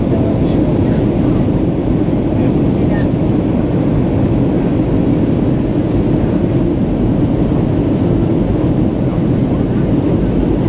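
Steady cabin noise inside a jet airliner on descent: engine and rushing air, a dense, even low rumble with no change.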